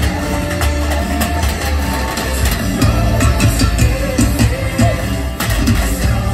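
Loud amplified band music with a heavy bass beat, guitar and a singing voice, played live from an outdoor stage.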